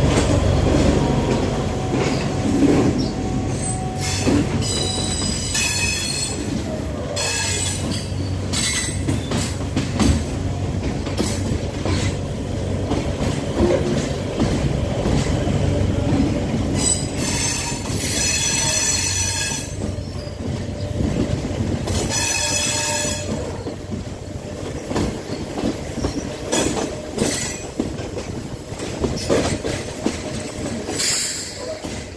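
Sri Lanka Railways Class S11 express train running over the track, with a steady rumble and scattered clicks of the wheels on the rails. Four bursts of high-pitched wheel squeal come through, the longest about two and a half seconds, and the rumble eases toward the end.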